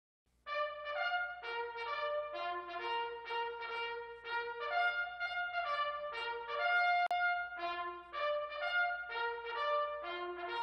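A solo bugle call: a brisk run of notes on a few pitches, rising and falling, starting about half a second in, with one longer held note a little past the middle.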